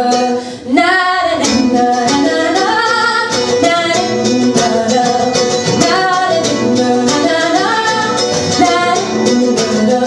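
Live acoustic folk song: a woman singing over plucked acoustic guitar, with a brief drop in the music under a second in.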